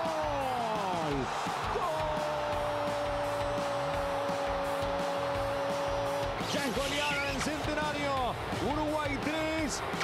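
Football commentator's drawn-out goal cry, a single shouted note held for several seconds after a penalty goal, then quick excited shouted commentary.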